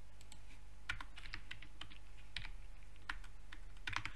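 Computer keyboard keystrokes: a handful of irregular taps in two short bursts while code is edited, over a faint steady low electrical hum.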